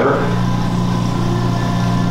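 Liposuction equipment running with a steady, low, even hum while the cannula removes fat at the knee.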